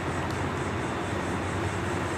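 Steady background noise with a low hum underneath, with no speech.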